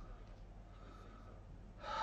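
Faint room tone, then a man lets out a loud, breathy sigh near the end.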